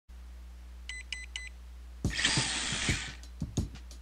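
Electronic logo-intro sting: three quick, high, identical beeps about a second in, then a loud burst of hiss at about two seconds and a run of sharp percussive hits, over a low steady hum.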